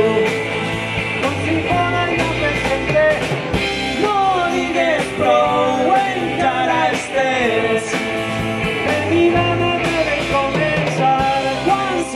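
Live rock band playing: electric guitars and bass through small amplifiers over a drum kit, with a melody line bending in pitch.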